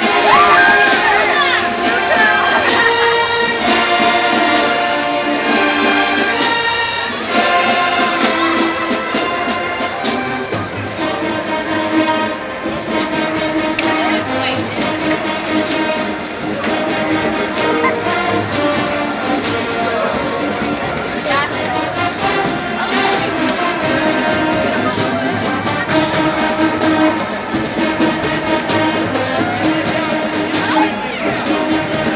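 Loud music from a marching band playing in a stadium, with people's voices mixed in.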